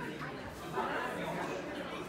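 Indistinct background chatter of many diners' voices in a restaurant dining room, with no single voice standing out.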